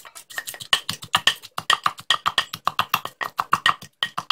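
Wooden pestle pounding garlic, shallot, chilli and tomato in a mortar: rapid, even knocks, about five a second.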